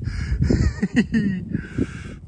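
A man laughing under his breath, then a short breathy rush of air near the end.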